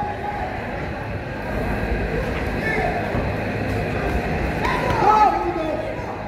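Indistinct voices and murmur echoing in a large gymnasium hall, with one raised voice calling out about five seconds in.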